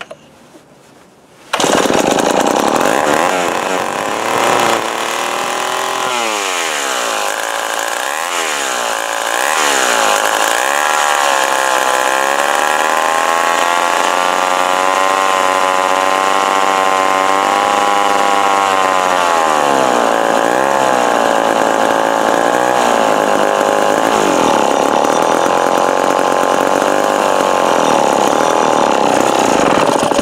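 Remington Super 754 two-stroke chainsaw catching about a second and a half in and running loudly on its own, its engine speed surging up and down unevenly rather than holding a steady idle. The owner blames the rough running on the carburetor, which he thinks needs a rebuild.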